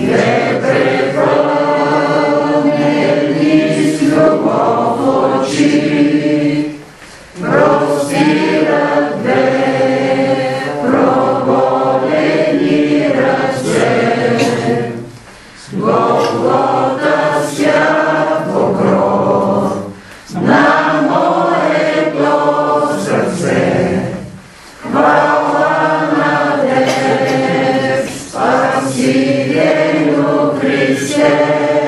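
A group of voices singing a hymn together, in sung phrases broken by short pauses every few seconds.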